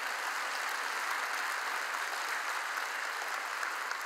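Large congregation applauding, a steady wash of clapping that holds at an even level throughout.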